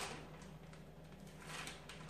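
Faint crinkling and rustling of a plastic zip-top gallon bag as a rolled rack of raw, marinated pork ribs is worked into it, with a light click at the start, over a low steady hum.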